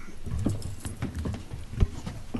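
A room of people getting up from their chairs: chairs shifting, feet shuffling and scattered knocks, with one louder knock near the end.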